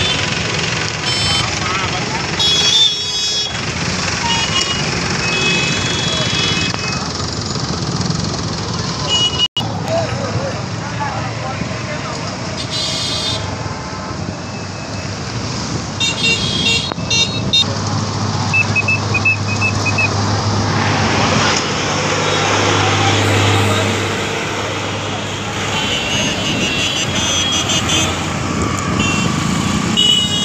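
Road traffic heard from a moving two-wheeler: a steady wash of engine and road noise, with short vehicle horn toots every few seconds.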